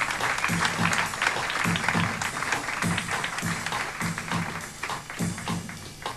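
Jazz drum kit played in a steady pattern of low drum strokes with sharp stick hits. A wash of audience applause is strongest over the first few seconds and then fades.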